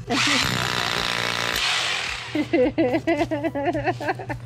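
Corded hammer drill boring into a concrete patio with a masonry bit, running for about two seconds and then stopping.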